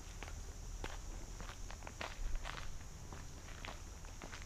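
Footsteps of a person walking on a paved path, faint light steps at about two a second.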